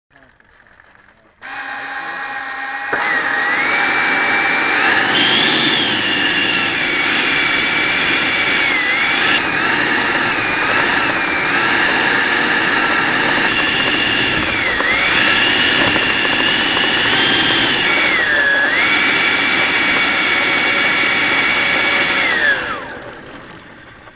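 Freewing T-45 Goshawk's 90 mm electric ducted fan, heard from a camera mounted on the model, starting up about a second and a half in and rising to a steady high whine. Its pitch rises and dips several times with the throttle, then it winds down and fades out near the end.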